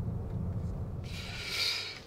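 Low, steady drone of a car's engine and road noise heard inside the moving car's cabin. About a second in, it gives way to a broad hiss.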